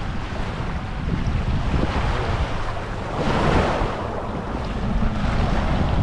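Wind buffeting the microphone over small waves washing in the shallows, with a louder surge of water about three seconds in.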